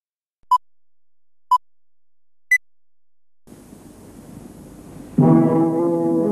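Three short electronic beeps a second apart, the first two at one pitch and the third an octave higher. Hiss follows, and about five seconds in, brass instruments begin a sustained chord.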